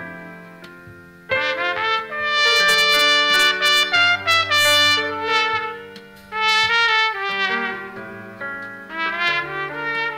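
Trumpet playing a slow melody in long held notes over a quieter, lower accompaniment. A loud phrase begins just over a second in, after the fading end of the previous note.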